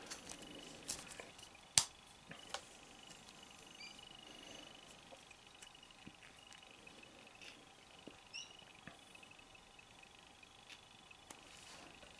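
Small plastic action-figure parts being handled and fitted: faint scattered clicks and taps, with one sharper click about two seconds in, as the figure's jetpack and cape are swapped.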